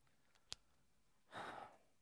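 Near silence in a small room, broken by a faint click and then one short, soft breath.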